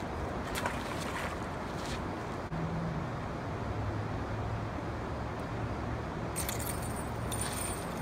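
Light clicking and rattling of a fishing rod and spinning reel being handled, turning into dense clicking near the end as a fish is hooked. A steady low hum runs under it from about the middle.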